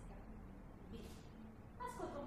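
A short pause in a woman's reading aloud: faint room tone with a brief soft hiss about a second in.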